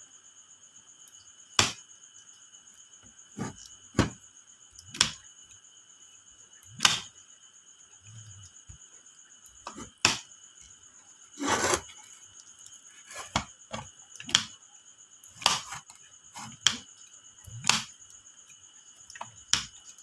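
FEEO 63 A two-pole dual-power automatic transfer switch worked by hand: its rotary handle is turned and the changeover mechanism snaps its breakers over, giving about a dozen sharp clicks and knocks at irregular intervals, with handling of the plastic case. A steady faint high-pitched tone runs underneath.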